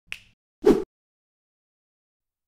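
Two short pop sound effects for an animated intro: a light click, then a louder, deeper pop about half a second later.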